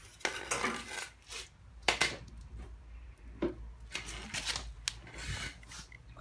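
Metal hand tools clinking and clattering in irregular bursts, with sharp knocks and rubbing, as someone rummages for a pair of needle-nose pliers.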